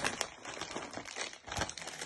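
Plastic food bags crinkling and rustling as they are handled: a run of small crackles, with a low thump about three quarters of the way through.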